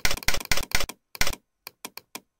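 A rapid run of sharp, loud clicking sound effects from the Tux Paint drawing program as its toolbar buttons, Undo among them, are clicked over and over. About six come packed into the first second, then a few sparser single clicks follow.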